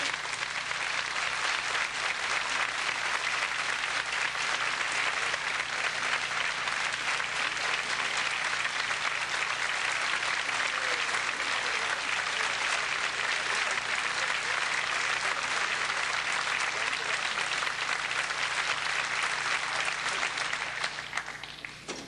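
Theatre audience applauding, a steady, sustained round of clapping that dies away near the end.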